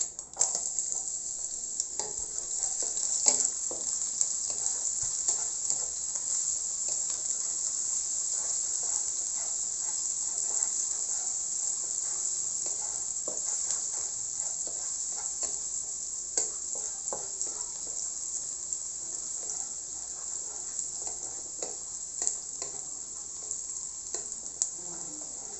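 Chopped onion sizzling in hot oil in a wok, the sizzle starting as it is tipped in and holding steady. A wooden spatula scrapes and taps against the pan as it is stirred.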